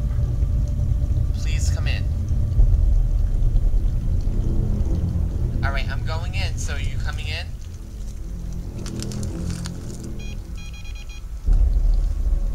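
A steady low rumble under faint sustained music-like tones, with a warbling pitched sound in the middle and a short run of electronic beeps near the end.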